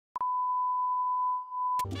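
A steady, single-pitched test-pattern reference beep, the 'bars and tone' signal, begins with a click just after the start and is cut off by a click near the end. Music starts in right after the cut.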